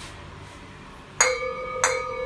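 Two stemmed wine glasses clinked together twice, about a second in and again just before the end, each strike leaving a clear ringing tone that hangs on.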